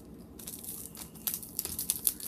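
Homemade slime being squeezed and kneaded by hand, giving irregular sticky clicks and crackles that come thicker in the second half.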